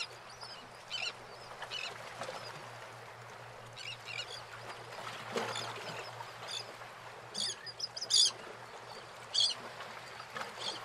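Birds calling in short, irregular chirps over a steady background hiss, with the loudest calls in the last few seconds.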